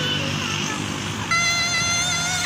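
Road traffic running, with a vehicle horn sounding one long steady note that starts about two-thirds of the way in.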